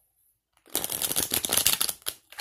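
A deck of tarot cards being shuffled by hand: a rapid run of card flicks lasting about a second and a quarter, starting about two-thirds of a second in.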